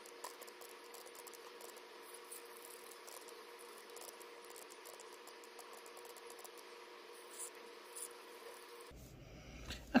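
Faint, rapid small clicks and ticks of calculator keys being pressed and a marker tapping on paper, sped up by fast-forwarding, over a faint steady hum.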